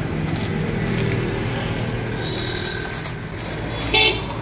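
A motor vehicle's engine running steadily, with a short, loud, high-pitched sound at the very end.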